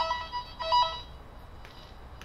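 VXSCAN wire tracer probe sounding its rapid two-note electronic warble as it picks up the tone generator's signal on the cable. The tone fades, comes back briefly, and dies out about a second in, as the probe is moved off the line and loses the signal.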